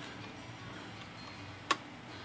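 A single sharp metallic tick near the end, as a driver works a screw on the steel side frame of an IBM Model C typewriter, over a faint steady low hum.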